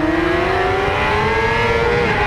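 Kawasaki ZX-6R inline-four engine accelerating hard, its pitch rising steadily, with a short drop in pitch near the end, heard from an onboard camera with wind rumble.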